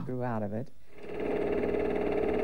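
The end of a spoken word, then from about a second in a steady droning hum with a fine rapid flutter.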